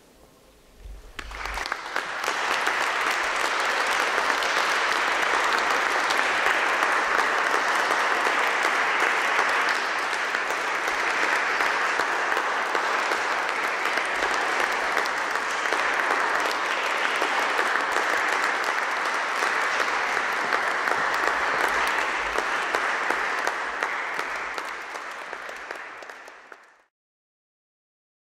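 Audience applauding after a piano performance: the clapping starts about a second in as the last piano sound dies away, holds steady, then thins out and cuts off near the end.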